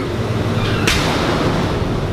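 A door slamming shut once, about a second in: a single sharp bang with a short echoing tail, over a steady low hum.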